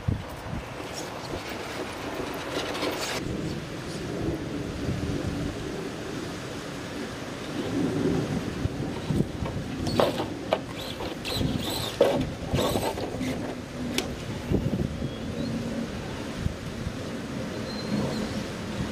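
Wind buffeting the microphone, under the low whine of a radio-controlled scale rock crawler's electric motor and gears as it crawls, changing pitch with the throttle. A few sharp knocks in the second half.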